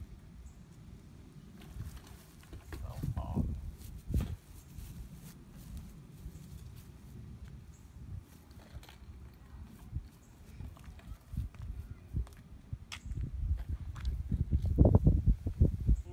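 Gusty wind rumbling on the microphone, swelling a few seconds in and again more strongly near the end, with a few faint clicks.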